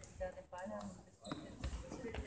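People talking in a sports hall, with a basketball bouncing on the floor a couple of times: one sharp knock and a duller thump.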